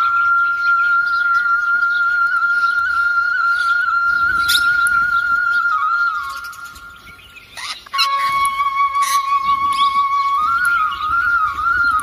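Indian flute playing slow meditative music: one long held note for about six seconds that fades away, then a lower held note that breaks into a short ornamented melodic phrase near the end.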